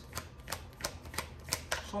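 A deck of tarot cards being hand-shuffled, the cards slapping together in a quick run of crisp clicks, about three a second.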